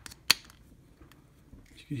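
A single sharp click as a blue insert pushed into a drilled redwood burl pen-cap blank hits the internal step of the bore, showing that the stepped bore stops it.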